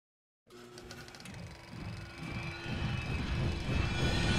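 Logo-intro music starting about half a second in: a rushing riser with held tones underneath, growing steadily louder as it builds.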